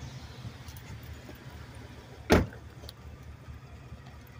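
A large SUV's door shut once, about halfway through, as a single heavy thud over a steady low background rumble.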